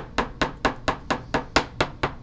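A clear rigid plastic card case tapped against a tabletop in a quick, even run of about nine sharp taps, about four a second.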